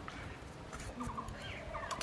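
Faint calls of farmyard fowl: short groups of rapid stuttering notes, about a second in and again near the end.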